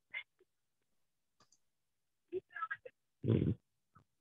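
A few short, choppy sounds through video-call audio, separated by dead silence. The loudest is a breathy burst about three seconds in.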